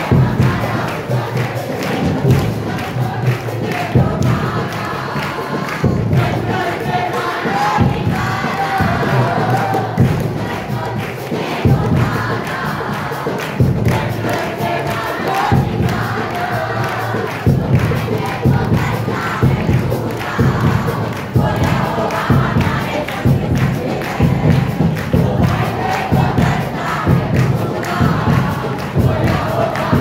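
A congregation worshipping aloud together: many voices singing and calling out at once, with hand clapping and thuds all the way through.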